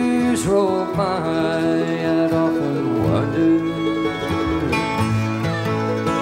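Bluegrass string band playing an instrumental break led by acoustic guitar, the lead line sliding between notes over held lower tones.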